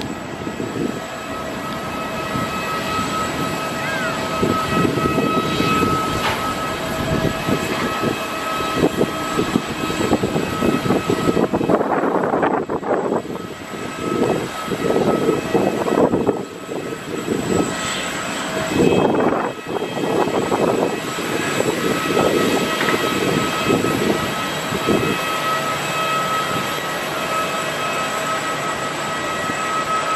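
Jet airliner engines whining steadily at the airport, several high tones held over a fluctuating rumble. The rumble comes and goes in uneven gusts, like wind buffeting the microphone.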